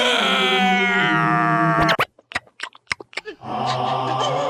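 Cartoon larva character's voice: a long, drawn-out wailing cry of about two seconds that drops in pitch in steps, then a few short clicks, then another held cry beginning near the end.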